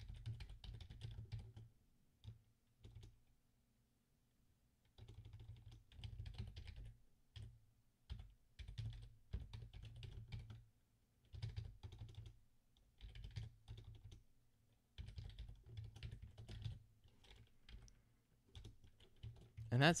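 Typing on a computer keyboard in short runs of keystrokes separated by pauses, with a longer pause a few seconds in, as a line of code is entered.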